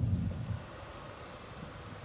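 Cabin noise of a moving 2020 Nissan Sentra SR. A low road and engine rumble fades away about half a second in, leaving a faint steady hiss.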